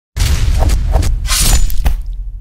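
Sound-effect stinger for an animated intro: a sudden deep rumble under a run of sharp crashes, the loudest about one and a half seconds in.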